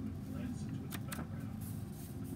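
Pages of a hardcover picture book being turned by hand, giving a few faint paper flicks, over a steady low hum.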